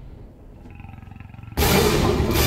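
Nature documentary trailer soundtrack: a low rumble fades into a quiet lull with faint tones, then a loud roar breaks in suddenly about a second and a half in.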